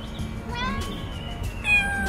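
A cat meowing twice: a short meow about half a second in, then a longer, slightly falling meow near the end.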